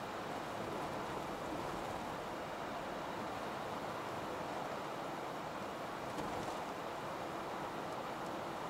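Steady road noise inside the cabin of a second-generation Toyota Vellfire minivan cruising along a street: an even rush of tyres and running gear with no distinct engine note.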